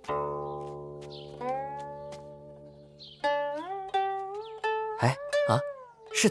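Guqin, the seven-string zither, played solo: single plucked notes that ring on, several of them slid upward in pitch after the pluck, with a quicker run of plucked, bending notes near the end.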